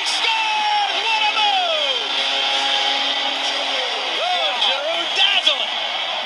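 Ice hockey TV broadcast heard through a television's speaker: a commentator calling the goal with long, drawn-out words over steady arena crowd noise.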